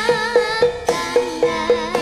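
A child singing a Javanese melody with wavering vibrato, over a gamelan ensemble playing evenly struck pitched metal notes about four a second.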